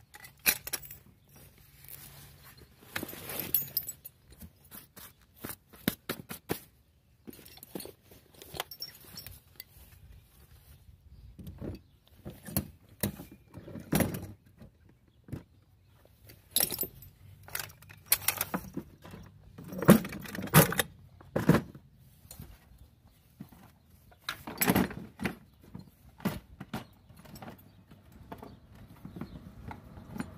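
Metal climbing hardware (carabiners and harness buckles) clinking and jangling as it is handled, with knocks of gear being set into a plastic rolling toolbox. The clicks and clanks come in irregular bursts with short pauses between them.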